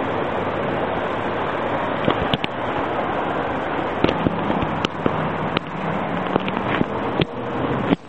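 A Lamborghini Gallardo Superleggera's engine heard as a steady rush as the car drives off, with a scatter of sharp pops and cracks from about two seconds in.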